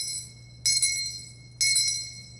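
Altar bells (sanctus bells) shaken three times, about a second apart, each ring jingling and then fading. They mark the elevation of the consecrated host.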